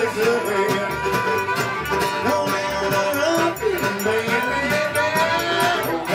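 A live acoustic string band plays an upbeat folk tune. A fiddle carries a sliding melody over walking upright bass notes and a steady strummed guitar rhythm.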